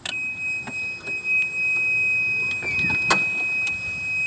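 Golf cart's reverse warning buzzer sounding one steady high tone as the cart backs up. A few knocks and rattles from the cart come through it, the loudest a little after three seconds in.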